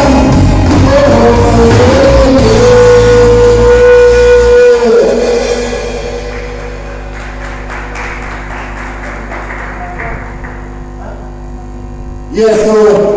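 Live reggae band with drums, bass guitar and keyboard ending a song: a long held note rides over the full band, the band stops about five seconds in, and a quieter sustained chord rings on.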